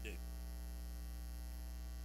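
Steady low electrical mains hum in the microphone and sound-system chain, with faint even overtones above it.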